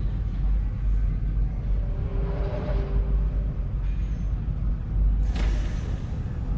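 Sci-fi spaceship ambience: a steady deep machinery rumble, with a soft hissing swell about two seconds in and a short, sharp burst of hissing air near the end, like a pneumatic release.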